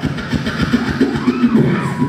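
Live beatboxing through a concert PA: a fast, even run of bass and vocal-percussion hits, with a pitched vocal glide that rises and falls in the middle, over a cheering crowd.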